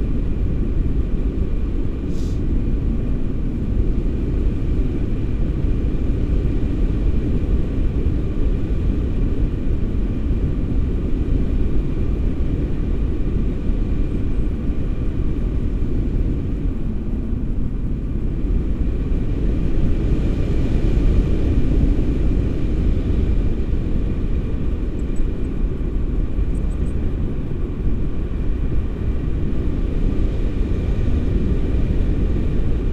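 Wind noise from the airflow of paraglider flight buffeting a pole-mounted camera's microphone: a steady low rumble.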